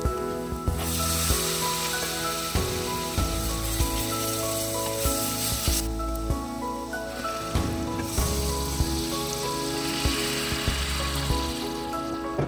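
Oil sizzling in a pot of frying onions and spices for an Indian tadka, in two spells: one from about a second in, and another after a short lull. Background music plays throughout.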